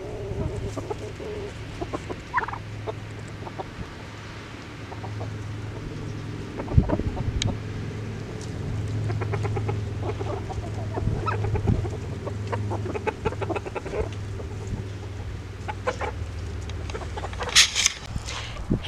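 A small flock of chickens, silkies among them, clucking softly as they forage, with scattered short clicks. A steady low hum runs underneath.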